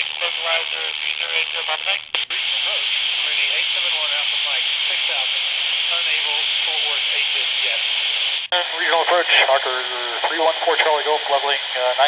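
Air traffic radio voices received in AM on a handheld ham radio and heard through its speaker: clipped, muffled voices under a steady hiss of static. About two seconds in the transmission breaks off, leaving mostly hiss, and after a brief cut-out past eight seconds clearer voice traffic comes back.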